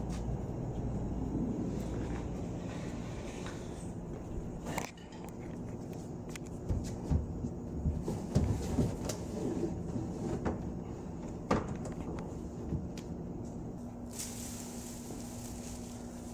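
Scattered light knocks and clunks of hut support poles being handled and set into holes in a countertop, most of them in the middle of the stretch, over a steady low background hum.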